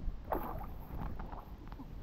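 Pool water splashing and sloshing right at a microphone held at the waterline, over a steady low rumble of moving water, with the biggest splash about a third of a second in.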